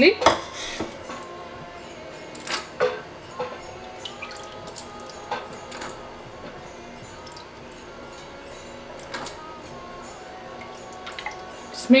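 Wooden spoon stirring milk in a stainless-steel stockpot, with occasional separate knocks of the spoon against the pot.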